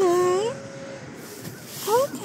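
A toddler's voice: a short high-pitched wordless sound that rises at its end in the first half second, then another rising sound near the end.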